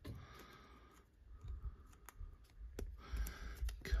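Thin plastic card sleeve being handled and worked open by hand: faint crinkling with a few short, sharp clicks spread through.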